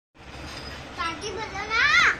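A young child's high voice, speaking from about a second in and rising in pitch toward the end, over quiet room tone.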